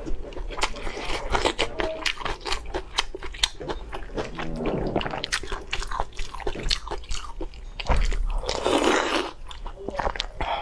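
Close-miked eating sounds from chewing sliced meat in a spicy broth: wet chewing with rapid clicks and smacks, then a longer slurp about eight seconds in as the next saucy mouthful is drawn in.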